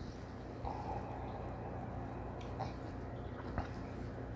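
Faint sounds of a whiskey tumbler being lifted and sipped from: a few small clicks and soft mouth noises, the sharpest near the end, over a steady low hum.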